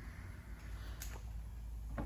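Quiet workshop room tone with a low steady hum and a single light click about a second in, from metal bumper parts being handled.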